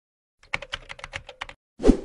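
Keyboard-typing sound effect: about a dozen quick key clicks over roughly a second, then a louder short whoosh-like hit near the end as a logo sting.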